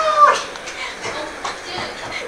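A girl's single drawn-out cry that rises and then falls in pitch, ending about half a second in. After it come only faint, scattered sounds.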